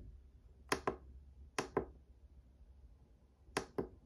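Buttons of a small digital pocket scale being pressed three times, each press a sharp double click, as the display is switched from grams to other units.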